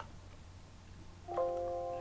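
A short electronic chime from the computer: several steady tones sounding together as one held chord, coming in near the end over a faint low hum.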